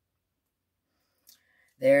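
Near silence with one faint click about a second and a quarter in, then a woman starts speaking near the end.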